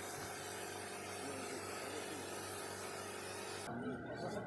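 Steady hiss of disinfectant mist spraying from the overhead nozzle of a walk-through disinfection tunnel, with a low steady hum beneath it.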